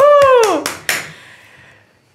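A voice calling out one drawn-out word that rises and falls in pitch, followed by two sharp hand claps about a third of a second apart, then the room fading to quiet.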